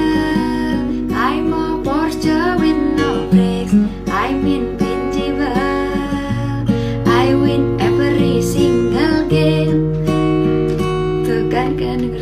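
Yamaha F310 steel-string acoustic guitar played in chords, strummed and picked, with a woman singing along.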